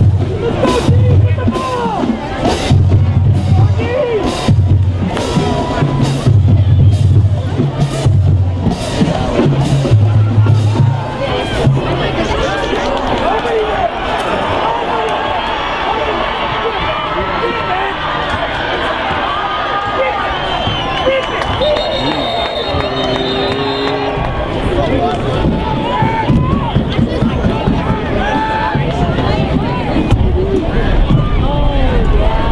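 Music with a stepping bass line and regular drum hits for about the first twelve seconds, then a crowd of spectators cheering and chattering.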